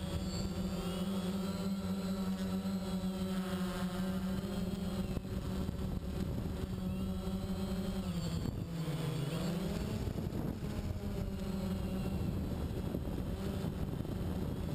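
DJI Phantom quadcopter's motors and propellers buzzing steadily in flight, heard through the camera mounted on the drone, over a rush of wind. About eight and a half seconds in, the pitch dips for about a second and comes back up as the motors slow and speed up again.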